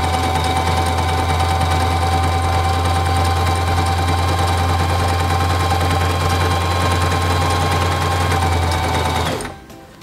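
Singer Simple 3232 electric sewing machine running steadily at speed while stitching a decorative honeycomb stitch. It stops abruptly near the end.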